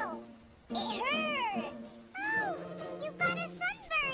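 Wordless, high-pitched cries from a cartoon character: two long rising-and-falling calls about a second and two seconds in, then quicker squeaky chatter near the end, over soft background music.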